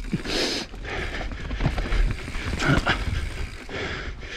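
Evil Wreckoning LB mountain bike descending a dirt forest trail: tyres rolling over dirt and leaf litter with irregular knocks and rattles from the bike, over a low rumble of wind on the microphone.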